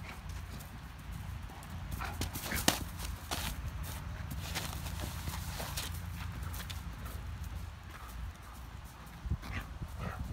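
A Great Dane puppy bounding across grass: scattered thuds and footfalls from its paws, over a steady low rumble.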